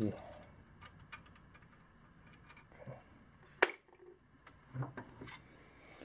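Faint clicks and clinks of small metal tools and parts being handled at a workbench vise, with one sharp click about three and a half seconds in.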